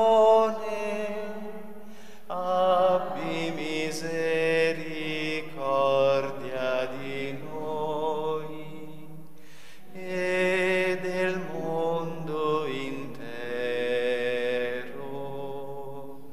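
A prayer chanted slowly in long held notes, in phrases of a few seconds each with short breaks between them.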